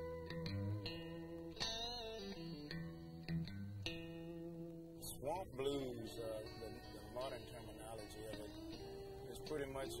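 Blues guitar playing, single notes picked over a held low note. About halfway through, a man starts speaking over the quieter guitar.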